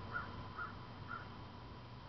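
A bird calling in short repeated notes, three of them about half a second apart within the first second, faint, then only quiet background.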